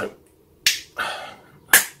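Two sharp clicks about a second apart, each fading briefly, the second one louder.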